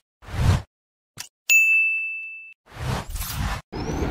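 Animated-logo sound effects: a short swish, a small click, then a bright ding about one and a half seconds in that rings for about a second, followed by more swishes near the end.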